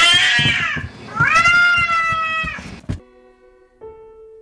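A domestic cat meowing twice, the second meow longer than the first. The sound cuts off sharply about three seconds in.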